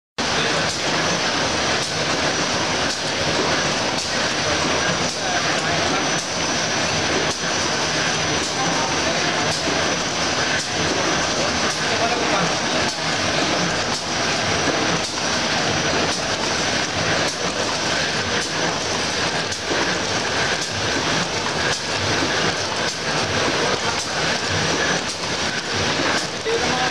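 Single-colour printer with rotary die cutter for corrugated board running steadily: a continuous loud mechanical din with regular clacks as the sheets are fed through.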